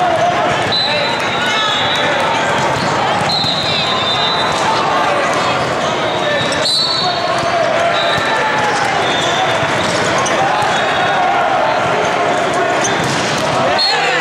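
Echoing din of a busy volleyball hall: many overlapping voices with volleyballs being struck and bouncing, one sharp ball impact standing out about halfway through.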